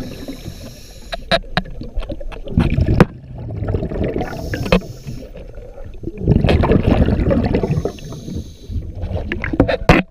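Scuba diver breathing through a regulator underwater: bubbles rush out in long surges on each exhale, about three times, with a faint hiss between them as air is drawn in. Scattered sharp clicks and knocks run through it.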